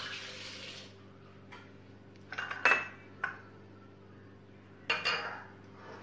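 A hand-held wire whisk and utensils clinking and knocking against a ceramic mixing bowl of eggs and sugar: a few separate sharp strikes, the loudest a little before the middle, over a low steady hum.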